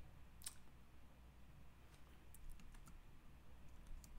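Faint clicking from a computer stylus or mouse while drawing on screen: one sharp click about half a second in, then a quick cluster of small clicks a little before the three-second mark, over near silence.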